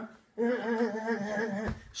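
A man humming one held, slightly wavering note for over a second, starting about a third of a second in.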